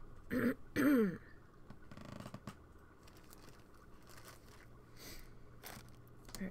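A person clearing their throat twice in quick succession, two short voiced sounds falling in pitch about half a second and a second in.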